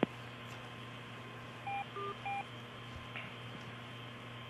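Three short two-tone electronic beeps in quick succession about two seconds in, over the steady hum and hiss of a thin, telephone-like communications line. A sharp click comes at the very start.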